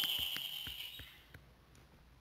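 Faint, scattered taps of a stylus on a tablet screen as handwriting goes on, over a thin high hum that fades out about a second in.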